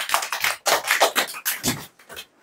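A small group of children clapping, a short round of applause that dies away near the end.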